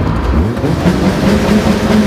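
Caterham Seven 360R's 2.0-litre Ford Duratec four-cylinder engine pulling hard under acceleration. Its pitch climbs about half a second in and stays high.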